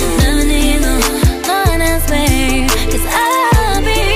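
Pop/R&B song: a singer holds long, bending notes over deep bass and a drum beat.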